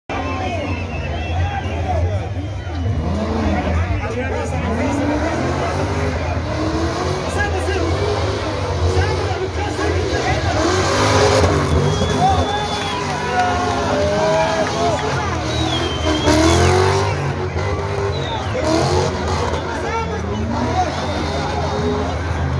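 Car engine revving in repeated surges as it is driven hard on a dirt track, with two louder bursts about eleven and sixteen seconds in. Crowd chatter runs underneath.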